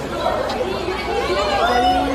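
Several people talking over one another in a small crowd, the words unclear.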